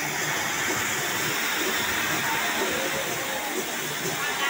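Several ground fountain fireworks (flower pots) spraying sparks with a steady hiss.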